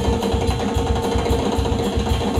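Live blues-rock jam band playing: one lead instrument holds a single long, steady note over a fast drum and bass groove, letting go near the end.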